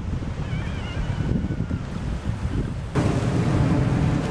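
Ocean surf breaking on a beach under heavy wind rumble on the microphone. About three seconds in, the sound steps up louder.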